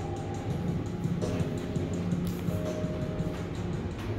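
Elevator car travelling upward, a steady low rumble, with soft music playing over it in held notes.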